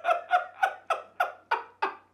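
A man's high-pitched laughter: a quick, even run of short 'ha' bursts, about three or four a second, each falling in pitch.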